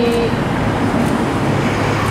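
Steady, loud engine noise from a nearby idling vehicle: a low hum under a broad hiss of street traffic.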